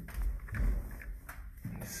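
Low rumble of the phone being handled and a few light knocks as someone climbs up, closer to the basement ceiling framing.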